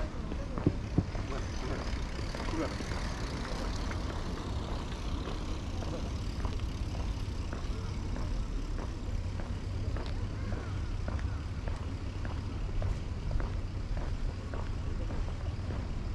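Outdoor ambience on a paved path while the camera-holder walks: a steady low rumble with scattered light clicks and faint background voices, and two sharp knocks about a second in.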